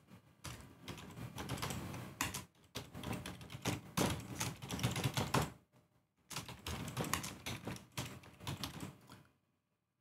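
Typing on a computer keyboard: a quick run of keystrokes, a brief pause about halfway, then another run that stops shortly before the end.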